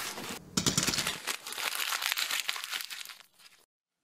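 Cardboard box flaps opening with a dense crinkling, rustling crackle of cardboard and paper, which fades and stops about three and a half seconds in.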